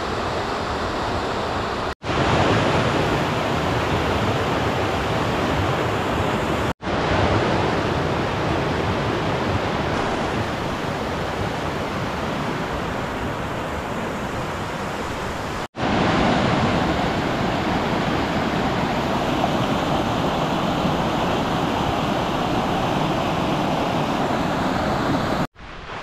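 Steady rushing of a shallow river running over a rocky bed. The sound cuts out briefly four times as the shots change.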